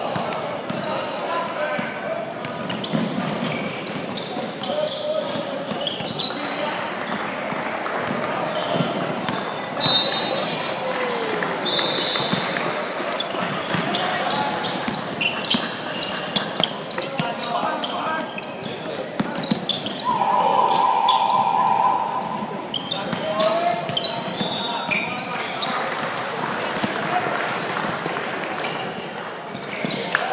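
Indoor basketball game in a large echoing hall: a basketball bouncing on the hardwood floor, sneakers squeaking, and players and spectators calling out. A steady held tone sounds for about a second and a half about two-thirds of the way through.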